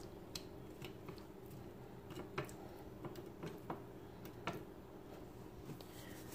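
Quiet handling sounds: a dozen or so faint, irregular soft clicks and taps as raw tilapia strips are turned over by hand on an earthenware plate.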